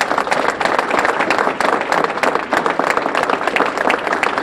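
Audience applauding: many hands clapping steadily without a break.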